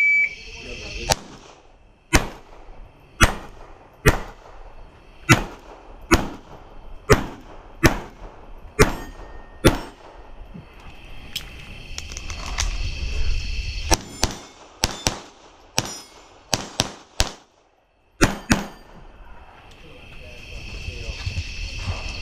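A shot-timer start beep, then .22 rimfire gunshots: about ten shots roughly one a second, a pause of a few seconds, then a quicker string of about ten more. Crickets chirp steadily in the gap.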